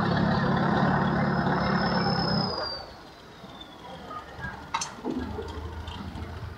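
A canal passenger boat's engine running loudly close by, with a high whine that rises and then falls; the engine sound drops away about two and a half seconds in. A sharp click near the end, then a fainter low engine hum.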